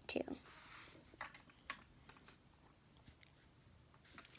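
Faint handling of small toy pieces: a brief soft rustle of crumpled foil, then a few faint plastic clicks as a small toy bucket is filled and handled.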